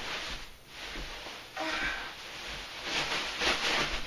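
A child shifting and struggling in a beanbag chair: rustling of the chair's fabric and bead filling in several bursts, the longest near the end, with breathy effort and a short vocal sound about a second and a half in.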